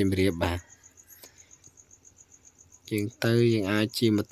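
An insect chirping in a steady high-pitched pulse, about seven pulses a second. A man's voice talks over it at the start and again from about three seconds in.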